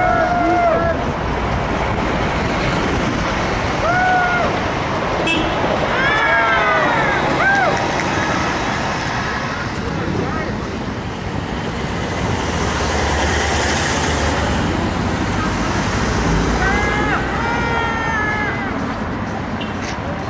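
Road traffic passing at a city intersection, louder for a few seconds past the middle as a heavier vehicle goes by. Over it, short calls and shouts from people ring out several times: at the start, around four to seven seconds in, and near the end.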